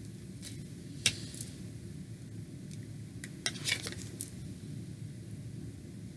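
Light clicks and taps of tarot cards being handled, set down and picked up: one click about a second in and a short cluster a little past halfway, over a steady low room hum.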